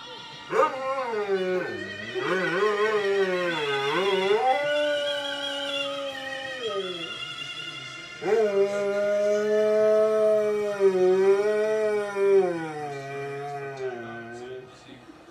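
Dog howling with its head thrown back: two long howls, the first starting about half a second in and dying away around seven seconds, the second starting about eight seconds in, each wavering up and down in pitch.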